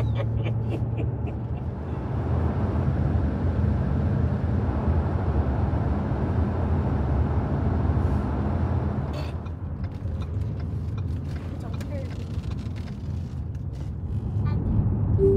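Car cabin road and engine noise while driving at highway speed: a steady low rumble with tyre hiss, which drops a little about nine seconds in.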